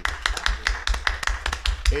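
Scattered hand clapping from a small group of people, quick irregular claps overlapping one another.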